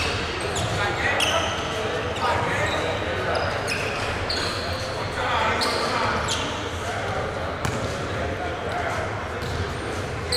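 Busy gym ambience in a large echoing hall: many voices talking indistinctly, basketballs bouncing on the hardwood floor, and short high squeaks scattered throughout.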